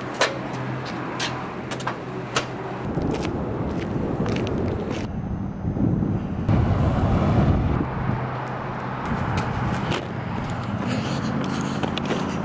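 Footsteps on concrete, a few sharp steps over a steady low hum. From about three seconds in comes several seconds of loud low rumbling noise, then the hum returns with scattered clicks.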